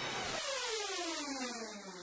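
Electronic synth sweep, a pitched tone gliding steadily downward over about a second and a half, ending a radio station-ID jingle.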